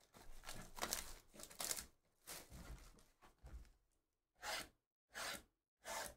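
Plastic shrink wrap being torn off a cardboard trading-card hobby box: crinkling, tearing plastic in a run of short rips, with three sharper rips about a second apart in the second half.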